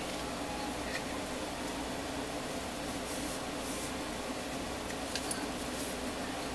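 Heavy cardstock being handled and pressed flat by hand: two brief papery swishes about three seconds in and a couple of light clicks near the end, over a steady background hum.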